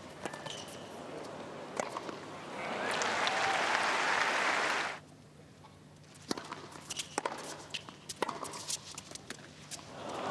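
Tennis on a hard court: racket-on-ball strikes and sneaker squeaks. Crowd applause swells about two and a half seconds in and is cut off sharply at about five seconds. After that come more sharp ball strikes of a rally.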